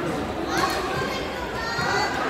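Indistinct voices and chatter echoing in a large indoor hall.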